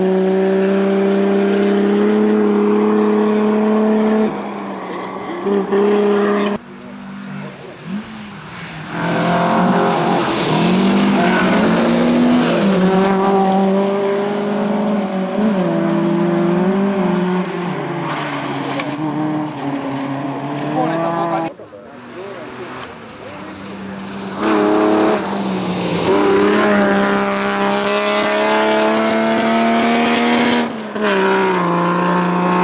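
Rally car engines revving hard on a gravel stage, climbing in pitch and dropping at gear changes as successive cars accelerate past and away. The sound fades twice, about a quarter of the way in and again about two-thirds in, before the next car's engine rises.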